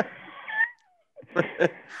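Men laughing in short bursts, with a high squeaky note that slides down in pitch about half a second in.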